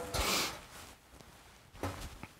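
A man's short breathy laugh, an unvoiced exhale lasting about half a second, followed by quiet with one faint short sound near the end.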